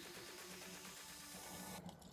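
Near silence: faint steady background hiss, with no distinct chewing or crunching to be made out.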